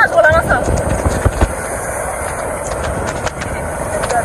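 Steady wind and road noise on a moving motorcycle on a wet road, with irregular knocks from the wind buffeting the microphone. A woman's voice is heard briefly at the start.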